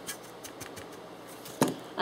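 Brush sweeping pastel dust around a metal pan, faint light scratching and small clicks, then a single sharp knock about a second and a half in.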